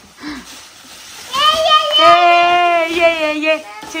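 A toddler crying: one long wail starting about a second in and lasting about two seconds.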